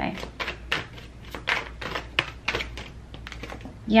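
A deck of oracle cards being shuffled by hand: a run of quick, irregular soft clicks and flicks as the cards slide and snap against each other.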